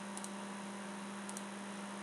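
Steady low electrical hum with faint hiss from the recording setup, with a few faint clicks.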